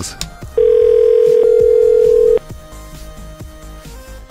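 Telephone ringback tone: one ring, a steady tone of about two seconds, as the called line rings at the other end. Quieter background music with a regular plucked beat runs beneath it.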